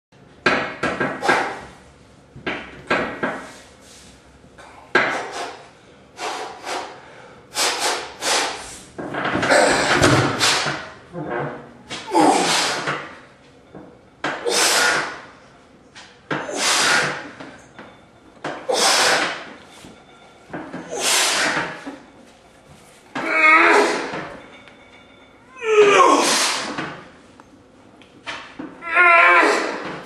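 Forceful exhalations from a man working a leg press loaded with about 1100 lb, one with each rep about every two seconds, turning into strained voiced grunts near the end as the set gets hard. A few short clunks from the machine come in the first three seconds.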